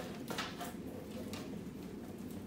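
Faint handling noise of electrode cables and a small plastic pad being untangled and unwrapped by hand: soft rustling with a few light clicks.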